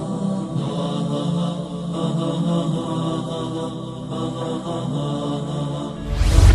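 Background music of a wordless vocal chant, with long notes held steadily and changing every second or so.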